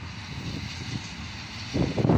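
Low rumble of an approaching locomotive-hauled train. About three-quarters of the way through, a sudden loud rough rumbling noise sets in and carries on.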